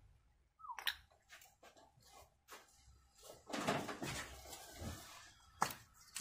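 Paper shop towel rustling as it is rubbed over the oily valve cover and ignition coils, with a few light clicks and knocks from handling parts about a second in and near the end.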